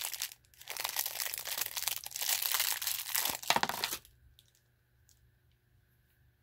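Clear plastic bag crinkling as it is handled and opened, for about four seconds, then stopping. A few faint clicks follow.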